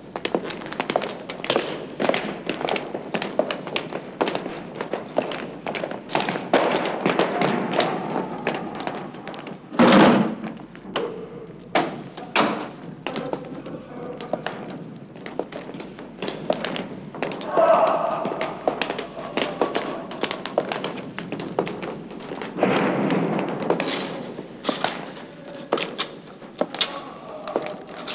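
Footsteps with clinks and knocks of metal gear, and a heavy thud about ten seconds in.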